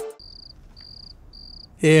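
Cricket chirping: a high, steady trill in pulses about half a second long, repeating roughly every three-quarters of a second. A man's voice breaks in near the end.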